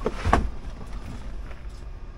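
Paccar MX-13 diesel engine, a freshly installed replacement after a camshaft failure, idling with a steady low rumble heard from inside the truck cab. There is one short knock just after the start.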